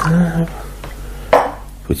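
Mostly speech: a voice holding one steady-pitched sound for about half a second, then a brief sharp noise about a second and a half in.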